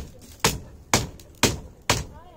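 Sharp, regular blows of a wooden-handled hand tool on woven bamboo strips, about two strikes a second, as a house floor is woven.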